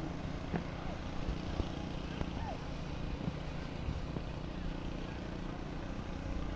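Steady low hum of a distant motor, with faint voices in the background.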